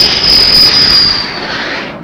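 Jet aircraft's engines running loud as it comes in to land, a rushing noise with a high steady whine that drops a little and fades near the end.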